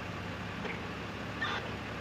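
Steady low rumble of an idling vehicle engine, with a brief faint voice about one and a half seconds in.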